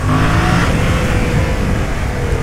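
Yamaha MT-07's parallel-twin engine, on its stock exhaust, pulling hard under open throttle as the motorcycle accelerates, steady and loud throughout.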